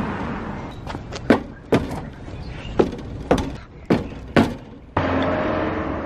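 Several sharp knocks and taps, irregularly spaced over about four seconds. About five seconds in they give way to a steady low hum.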